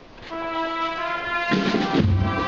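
Procession band's brass holding a sustained chord that begins shortly after the start; about a second and a half in it swells, with lower brass and drums joining.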